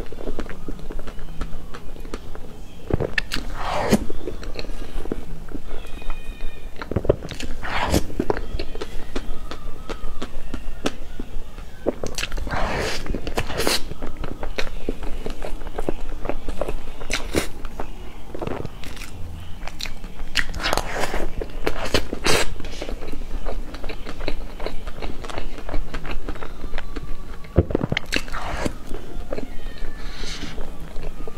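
Close-miked eating of soft cream cake: wet chewing, smacking lips and mouth clicks, coming irregularly, with occasional clicks of a metal utensil scooping the cake.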